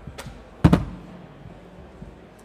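A single loud thump on the lectern a little after half a second in, with a short low ringing after it and a faint click just before: an object is set down or knocked against the lectern near its microphone.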